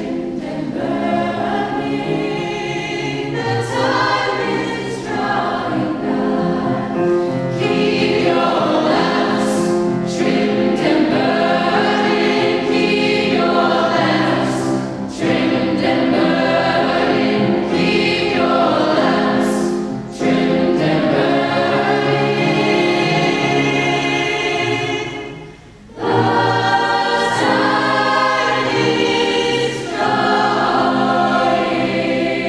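A choir singing in long, held phrases, with a brief pause for breath a few seconds before the end.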